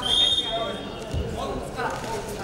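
A shrill whistle, one steady blast about a second long at the start, over shouting voices in the hall, with a dull thump a little after.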